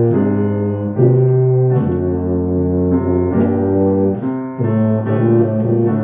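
Tuba playing a slow melodic line of held notes, moving to a new pitch about every half second to a second.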